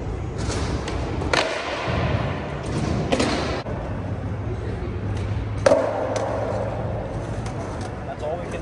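Skateboard tricks on a wooden ledge and concrete floor: two sharp board impacts, about a second in and near six seconds in, the second the loudest, each echoing through a large hall. After the second impact come the steady rumble of the wheels rolling on concrete.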